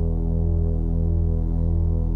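Sustained low synthesizer drone, a thick chord of steady low tones that pulses slowly and evenly: the opening bars of a new-wave pop song before the melody comes in.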